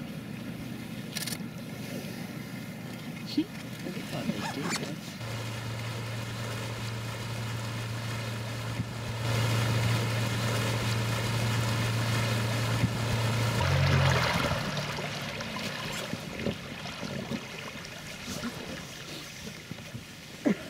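Small boat's outboard motor running at low speed with a steady hum, rising briefly in pitch about fourteen seconds in and then falling away.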